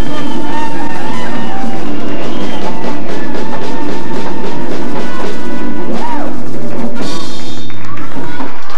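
A live Latin band playing loudly, driven by hand drums and congas over a steady bass line.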